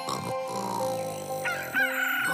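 A rooster crowing over soft music, starting about three quarters of the way in, its last note held long and falling slightly.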